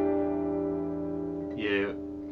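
Acoustic guitar chord ringing out and slowly fading after a strum. It is a G-major-family shape with the third and fourth fingers held at the third fret of the top two strings.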